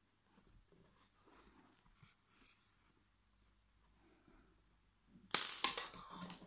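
Faint rustle of yarn being drawn through crocheted stitches, then about five seconds in a sudden loud burst of rustling with several sharp clicks as the crocheted toy is handled and turned over close to the microphone.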